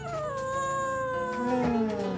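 A kitten's long, drawn-out meow that slides slowly down in pitch over nearly two seconds: a hungry call close to feeding time. A person's low murmur comes in near the end.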